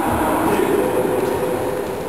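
Steady, echoing din of a busy school sports hall, with indistinct voices in the background.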